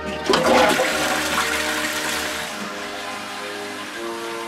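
Toilet flushing: a sudden rush of water about a third of a second in, loudest at first, then a steady rushing that slowly fades.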